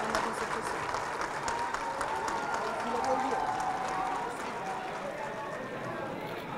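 A room full of people clapping, mixed with overlapping chatter; the clapping thins out after about four seconds, leaving mostly talk.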